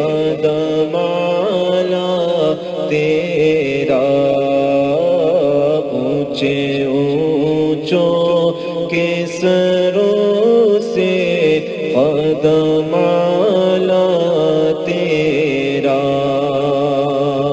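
Wordless melodic interlude between verses of an Urdu devotional manqabat: a wavering melody over a steady low drone.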